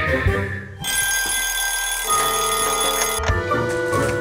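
Cartoon alarm-clock bell ringing loudly for about two seconds, starting about a second in and cutting off suddenly, over light background music.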